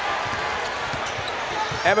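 A basketball bouncing on a hardwood court, a string of short low thuds, over the steady noise of an arena crowd.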